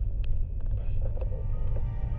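A steady deep rumble of sci-fi film ambience, with a few faint light clicks over it.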